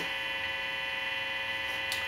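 Steady electrical hum from a 1971–72 Gibson SG Pro's P90 pickups through its amplifier: an even buzz with many overtones, no notes played.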